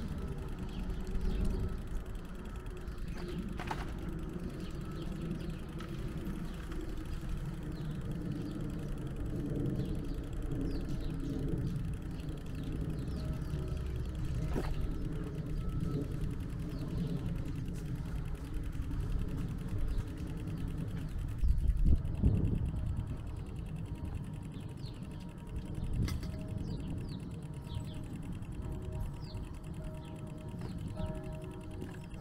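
Outdoor village ambience: a steady low rumble with small birds chirping, more often in the last part, and a louder low surge about 22 seconds in.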